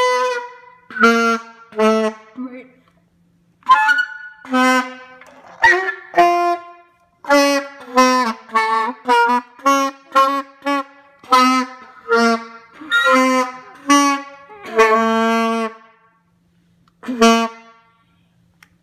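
Saxophone played by a beginner who has just got the instrument: a slow tune of short, separate notes with brief gaps between them, and one longer held note near the end.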